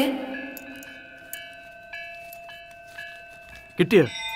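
Background film score of several held, bell-like tones that ring on together, with faint ticks between them. A short burst of a voice comes just before the end.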